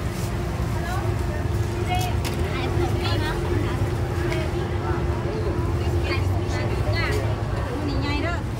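Busy street market ambience: scattered voices of people talking over a steady low rumble and a constant hum that runs until near the end.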